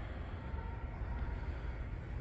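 Room tone of a large aircraft hangar hall: a steady low rumble under a faint even hiss, with no distinct events.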